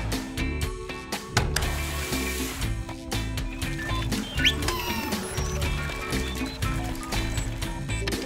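Cartoon background music with a steady beat, over machine sound effects of clicking and whirring. A short rising whistle comes about halfway through.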